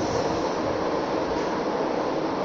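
Steady background noise: an even hiss with a low rumble under it, with no distinct events.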